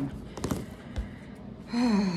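A few light clicks and a soft thump of paper tabs being handled and creased with a bone folder on a cutting mat. Near the end comes a heavy voiced sigh that falls in pitch.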